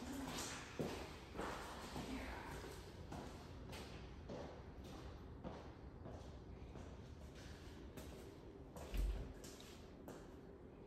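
Footsteps on hard plank flooring, irregular soft knocks as someone walks, with a louder low thump about nine seconds in.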